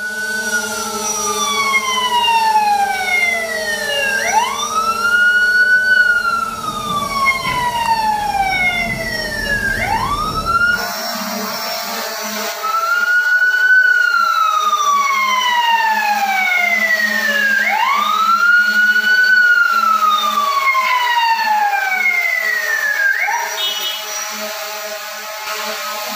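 A siren wailing in slow cycles, each a quick rise in pitch followed by a long fall over about five seconds, with a fainter second wail overlapping. A low background rumble cuts off abruptly partway through.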